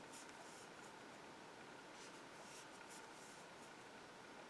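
Near silence with faint, irregular scratchy rustles of yarn being drawn through stitches on a metal crochet hook.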